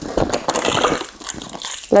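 Hand rummaging in a handbag, with a bunch of keys jingling and rattling as they are lifted out: a dense run of small clicks and clinks.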